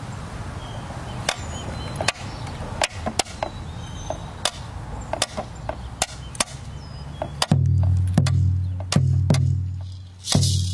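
Sharp, irregular wooden stick strikes open a Taino percussion piece. About seven and a half seconds in, deep drum beats join with a strong low ring.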